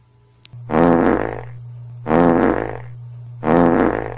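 Three identical loud, buzzy electronic honks about a second and a half apart, over a steady low hum that switches on just before them and cuts off suddenly after the last.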